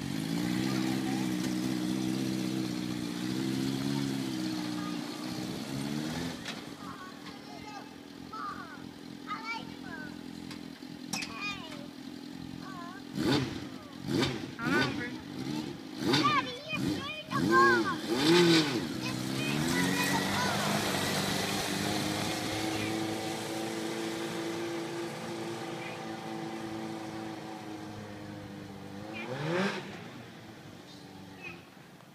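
Fuel-injected, water-cooled 2003 Suzuki GSX-R600 inline-four in a tube-frame dune buggy, running at low revs. It is then revved sharply several times in quick succession, settles to a steady note that fades as it moves away, and rises in pitch again near the end as it accelerates.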